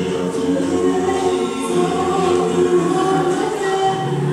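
Music of several voices singing together in a choir, holding long notes.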